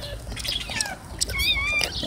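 A newborn pit bull puppy squeaking: one short, high-pitched, wavering cry about one and a half seconds in, over a low rumble.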